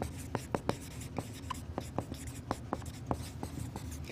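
Marker pen writing on a whiteboard: a string of short, irregular squeaks and taps as the letters are drawn.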